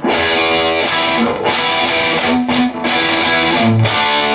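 Electric guitar playing a rock rhythm passage from an open low E: a series of strummed E minor chords, each ringing on, with quick string mutes between and a low note near the end.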